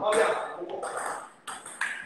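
Indistinct talk from a man's voice, loudest in the first half-second and trailing off, with a short sound near the end.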